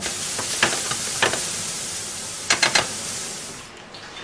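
A steady hiss with a few sharp clicks, fading out just before the end.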